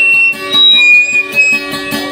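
Guitar played in a fast, steady plucked rhythm as dayunday accompaniment, with a high, held tone sounding over it.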